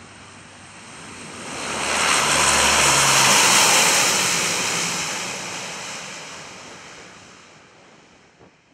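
The four turboprop engines and propellers of a C-130 Hercules as it rolls past along the runway just after touchdown. The sound swells to a peak around three and a half seconds in, then fades steadily away.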